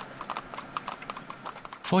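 Horses' hooves clip-clopping on an asphalt road as they pull a wooden cart: a quick, uneven run of sharp hoofbeats, several per second.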